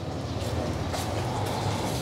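A steady low background hum with a faint click about a second in.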